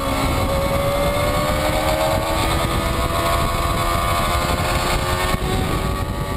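Sport motorcycle engine running steadily, its pitch climbing slowly, over a rushing noise.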